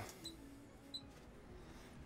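Near silence: room tone, with two faint short clicks about a quarter second and about a second in.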